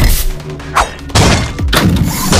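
Dramatic soundtrack music under heavy sword-fight hit sound effects. A thud comes at the start, a sharp strike about three-quarters of a second in, and a loud hit just after a second.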